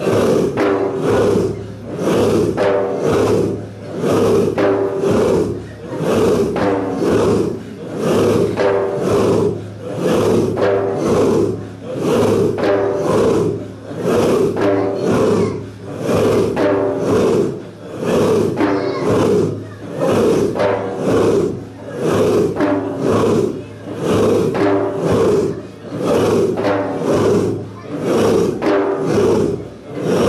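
A group of men chanting dhikr together in one rhythmic, repeated phrase, the chant rising and falling in a cycle of about two seconds.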